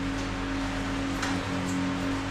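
Background music holding a steady low note over a noisy hiss-like bed.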